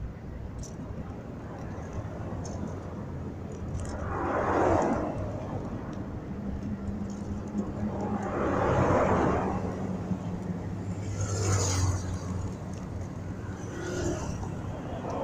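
Motor vehicles passing: three swells of car noise rise and fade over a steady low rumble, with a low engine hum in the second half.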